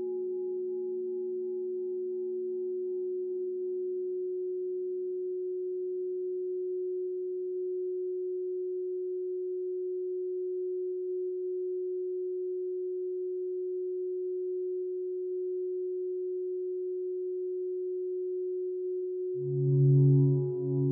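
A steady, unwavering pure tone from a meditation 'frequency' track billed as the frequency of gold. Fainter bowl-like overtones die away over the first half, leaving the single tone. Near the end a louder, lower, singing-bowl-like tone enters.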